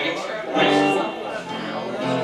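Electric guitar chords strummed and left ringing on amplified guitars between songs, the first chord coming about half a second in, with voices in the room around them.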